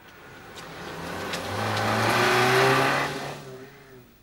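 A car engine, growing louder over about two seconds and then fading away near the end.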